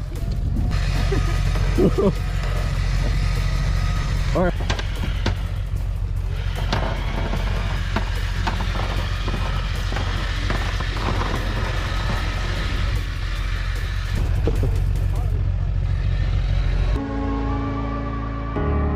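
A man laughing over a steady low rumble, with a run of scattered knocks in the middle.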